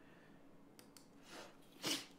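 Mostly a quiet room, with a short, sharp intake of breath through the nose near the end.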